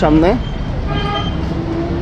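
A vehicle horn sounds one steady tone lasting about a second in the middle, over road traffic noise; a voice trails off right at the start.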